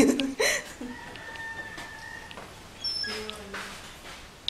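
A rooster crowing, with one long, steady held note starting about a second in.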